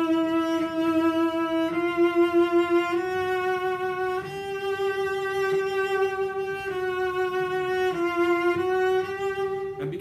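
A cello bowed in slow, long held notes with continuous vibrato, high on the instrument, moving up a few steps and back down with a new note every second or two. It is a vibrato exercise, keeping the vibrato going through each note with the upper fingers, including the fourth finger.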